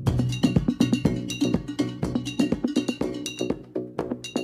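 Electronic dance music from a DJ set: a busy rhythm of short pitched percussion hits with no heavy kick drum underneath.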